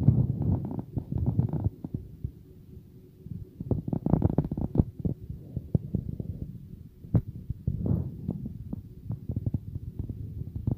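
Irregular muffled low thumps and rumbling with scattered sharp clicks, the handling noise of a hand-held camera microphone moving about in a tight space, with a quieter patch a couple of seconds in.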